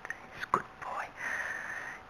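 Grooming brush rubbing over a horse's coat in short strokes close to the microphone, with a sharp knock about half a second in and one longer, steady stroke near the end.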